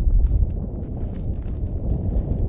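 Wind buffeting the microphone in a steady low rumble, with scattered small clicks and rustles of handling close by.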